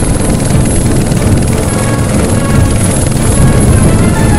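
Steady, loud drone of propeller aircraft engines, a dense low rumble that runs on without a break.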